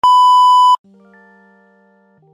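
A loud, steady, high test-tone beep of the kind played over TV colour bars, lasting about three-quarters of a second and stopping abruptly. Quiet, sustained electric-piano chords follow.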